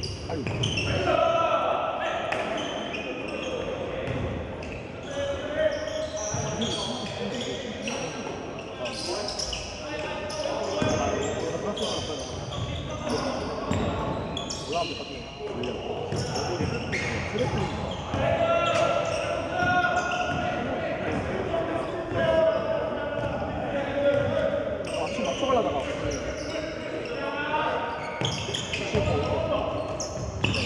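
Live basketball play on a hardwood gym floor: the ball bouncing again and again, with players' and onlookers' voices calling out, echoing in the hall.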